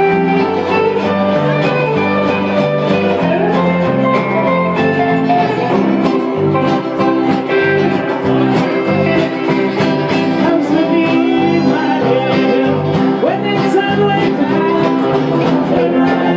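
Live string band playing an upbeat bluegrass-style tune on strummed acoustic guitars, electric bass and fiddle. The rhythm is steady and driving, with sliding melody lines over it.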